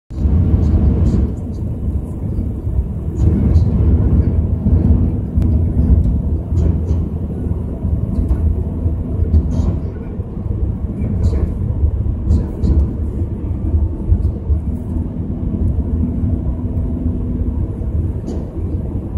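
Steady low rumble of a vehicle driving along a highway at speed: engine, tyre and wind noise heard from on board, with a faint steady hum and occasional light ticks.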